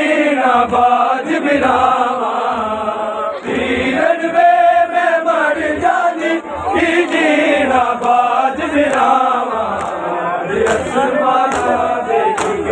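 A large crowd of men chanting a Muharram noha together, loud and continuous. Beneath the voices is a regular low thud about once a second, from hands beating bare chests in matam.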